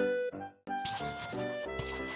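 Background music with a simple instrumental melody, breaking off briefly about half a second in before a new tune starts. Over it, the scratchy rub of a marker pen drawing lines on paper.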